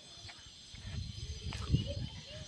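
Quiet outdoor sound of someone walking on a dirt lane: low, irregular thuds of footsteps and handling, with a faint distant call about one and a half seconds in.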